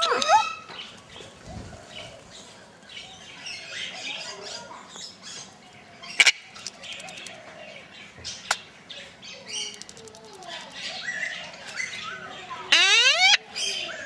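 Male red-sided Eclectus parrot vocalising: a short rising whistle at the start, soft chattering in the middle, and a loud rising whistle about a second before the end. Two sharp clicks fall in between.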